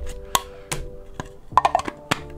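Light clicks and knocks of a hard clear plastic cube case and its cardboard box being handled, with a quick cluster of clicks near the end.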